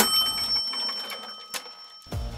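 Cash-register 'ka-ching' sound effect: a quick clatter of clicks, then a bell ringing on and slowly fading, with light ticks along the way.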